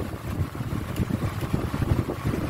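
Low, fluttering rumble of wind buffeting the microphone, with no distinct clicks or knocks.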